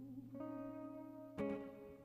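Live acoustic guitar accompanying a woman singing a slow worship song, with a new chord strummed about one and a half seconds in as she sings "like you".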